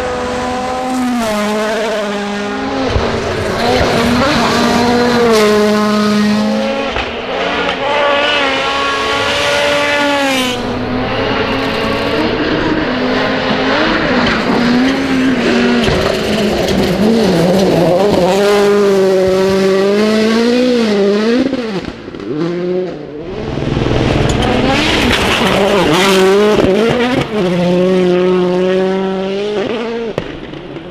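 Flat-out World Rally Cars (a Toyota Yaris WRC and a Hyundai i20 Coupe WRC) passing one after another on a gravel stage. Their turbocharged engines rev hard, rising and falling over and over with gear changes and lifts, while gravel sprays from the tyres. There is a brief lull a little past the middle.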